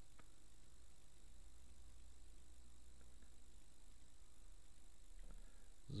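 Quiet steady background hum and hiss of the recording, with two faint clicks, one just after the start and one about halfway through.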